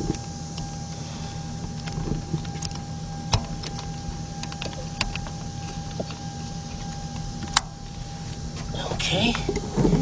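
Hands working an ignition coil's electrical connector back into place in a car engine bay: a few sharp plastic clicks and knocks, spaced a couple of seconds apart, over a steady hum with a constant thin tone.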